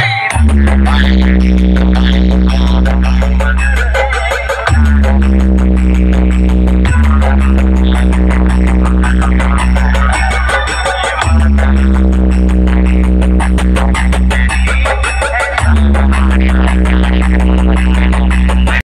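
Bass-heavy electronic dance track played loud through a tall stack of DJ box speakers. Long, deep bass notes start afresh every two to four seconds over a fast, clicking beat.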